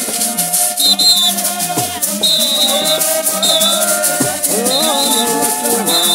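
A church congregation singing together to the steady shaking of hand rattles, with a short high warbling note recurring about once a second.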